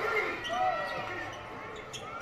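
Basketball game broadcast sound: a ball being dribbled on the hardwood court over arena crowd noise, with faint commentary.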